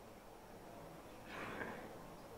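Quiet room tone with one short, soft breath heard about one and a half seconds in.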